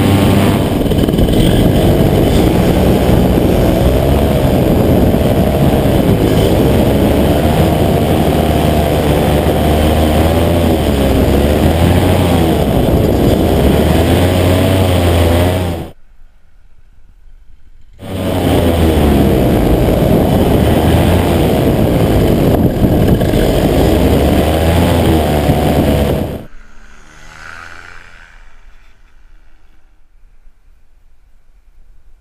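Paramotor engine and propeller running loudly, the pitch wavering up and down with the throttle. The sound cuts out for about two seconds past the middle, returns, and near the end drops to a much quieter, fading engine sound.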